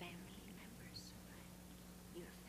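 Near silence: room tone with a steady low hum and faint, indistinct low voices.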